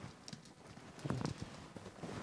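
A few light knocks and taps, loudest a little after a second in.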